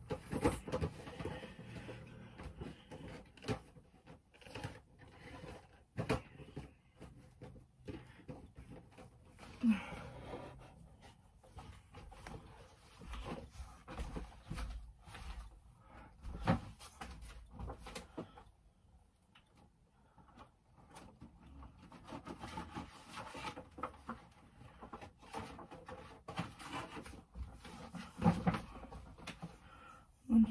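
Cardboard Funko Pop boxes being handled and set back on wall shelves: scattered light knocks, taps and rustles, with soft thumps from moving about the room.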